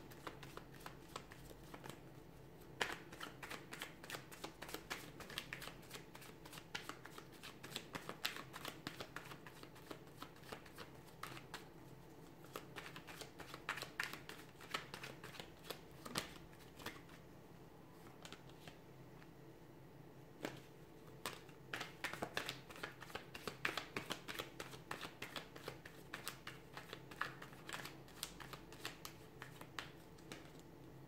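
A deck of tarot cards being hand-shuffled: fast runs of soft card clicks and flicks, thinning briefly a little past halfway through, over a faint steady hum.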